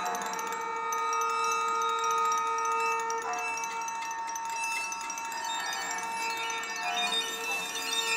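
Contemporary chamber ensemble of piccolo, toy piano, violin, viola, cello and percussion playing: long held tones under quick, repeated, bell-like tinkling figures.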